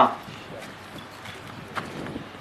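A few sparse, hollow knocks and taps against low outdoor background noise, the sharpest near the end: footsteps on a wooden podium.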